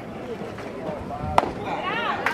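One sharp crack about a second and a half in as a pitched baseball reaches home plate, with spectators' voices around it that grow louder just after.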